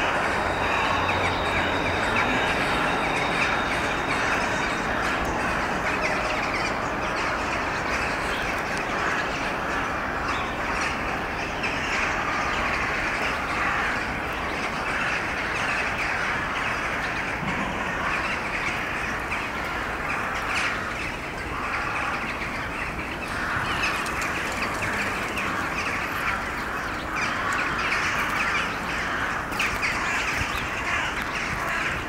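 A large flock of rooks and crows circling over their winter roost, many birds calling at once in a dense, steady chorus of overlapping caws.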